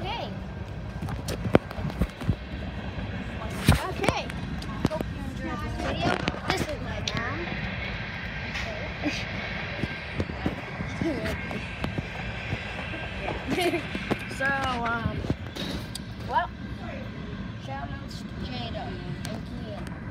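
Handling noise from a camera phone being grabbed and carried about: sharp knocks and rubbing on the microphone over a steady low rumble, with a voice making a few short wordless sounds.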